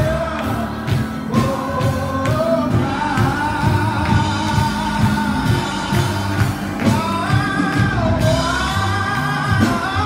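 Gospel praise singing in church: voices holding long, gliding notes over band accompaniment with a steady beat.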